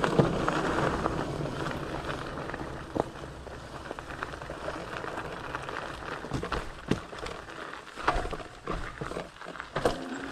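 Riding noise of a fat-tire electric mountain bike rolling fast over a dirt trail, easing off over the first few seconds as it slows. Scattered knocks and rattles as the fat tires bounce over sticks and bumps, most of them near the end.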